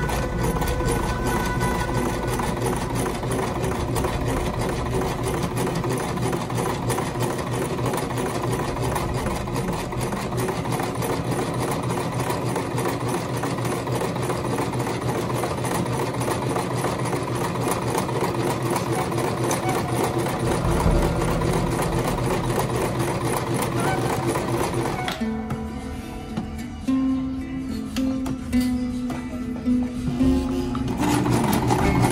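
Electric domestic sewing machine stitching cotton fabric at a steady, moderate pace: a fast, even run of needle strokes. The stitching stops about five seconds before the end.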